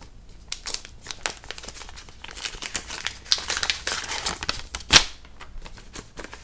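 Paper rustling and crinkling in quick irregular crackles as an envelope is opened and the letter inside pulled out and unfolded, with one sharp paper snap about five seconds in.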